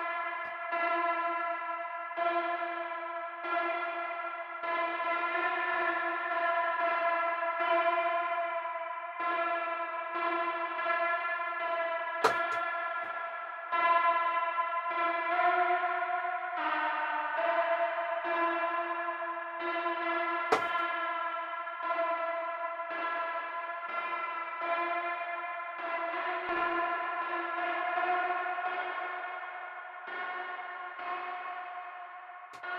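Nebula Clouds synthesizer, a Reaktor software synth, playing a sustained pitched tone with echo and effects. The tone is re-struck about once a second and briefly shifts pitch around the middle. Two sharp clicks cut through it partway along.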